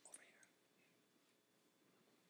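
Near silence: faint room tone in a pause of speech.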